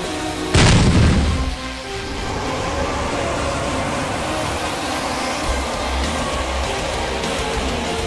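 Background music with a heavy boom sound effect about half a second in, the loudest moment, dying away over about a second.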